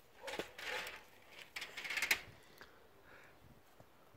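A few short scuffs of footsteps on rough ground in the first half, then quieter.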